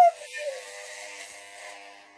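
Corded electric hair clippers running with a steady buzzing hum as they are pushed through thick, frizzy hair, with a short vocal 'ooh' fading out at the very start.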